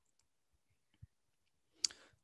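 Quiet pause in a man's talk over a webinar microphone: a faint low tap about halfway through, then a short sharp click and a brief breath just before he speaks again.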